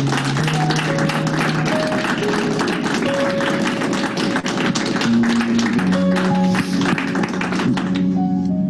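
People applauding, with rapid dense clapping that dies away just before the end, over background music of slow held notes.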